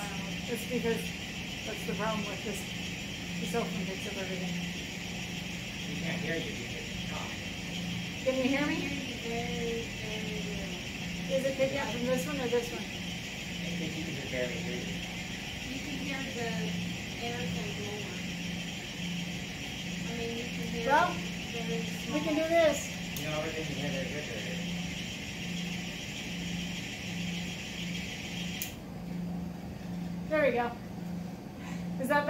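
Faint, indistinct voices over a steady electrical hum that pulses about once a second and a hiss, the noise of a troublesome microphone feed. The hiss cuts off suddenly near the end.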